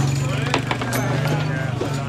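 Foosball being played on a wooden table: a few sharp knocks as the ball is struck by the plastic players and rattles against the wood, over a steady low hum and background chatter.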